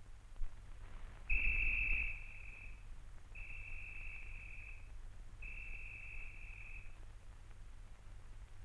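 A whistle sounded three times, each a long, steady, high note lasting about a second and a half, with the first the loudest. A low, steady hum from the old film soundtrack runs underneath.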